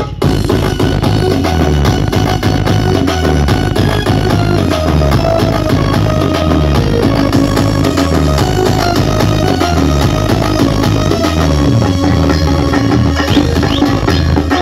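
Loud DJ music blasting from a large outdoor speaker stack, with a heavy repeating bass line and a steady beat.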